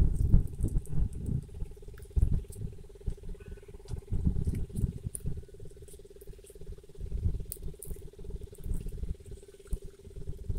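Dry red chillies crackling and rustling as they are snapped and stemmed by hand, in small scattered clicks. Irregular low rumbles of wind on the microphone and a steady low hum run underneath.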